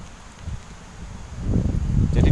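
Low rumble of wind and handling noise on the microphone of a camera carried on foot, louder from about a second and a half in.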